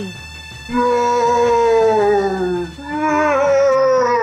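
A drawn-out howling wail whose pitch slides down over about two seconds, then a second, wavering wail about three seconds in: a dramatised dying scream. Under it runs background music with a steady low beat.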